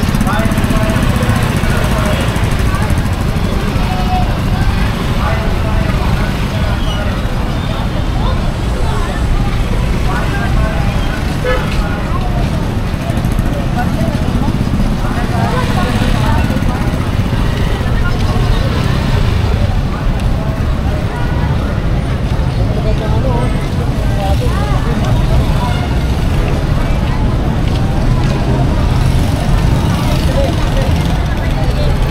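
Busy street-market ambience: many passers-by talking over a steady low rumble of motorcycle and tricycle engines.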